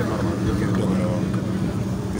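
A boat's engine running with a steady low hum, with water rushing along the hull as it moves at speed.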